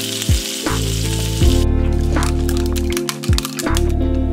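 Salmon pieces sizzling in an oiled frying pan, over background music with a steady beat; the sizzle cuts off suddenly about one and a half seconds in, leaving the music.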